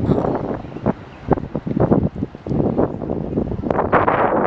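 Wind buffeting the camera's microphone: a gusty rumble that rises and falls unevenly.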